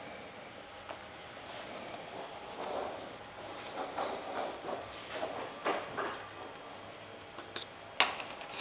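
Quiet rustling and a few light, irregular knocks and clicks as work gloves are pulled on and gear is handled at a steel workbench.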